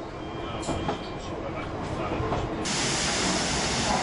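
Electric train noise: running noise with a few scattered clicks. About two and a half seconds in, it switches abruptly to a loud, steady hiss from an electric multiple unit standing at a platform.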